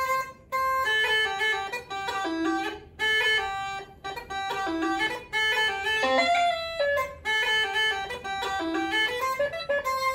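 Uilleann pipes chanter playing a fast phrase of a slide in clipped staccato, the notes cut off sharply with short silences between groups, the triplets played as crisp staccato figures.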